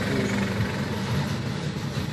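Steady low hum of an engine running nearby, even in pitch throughout.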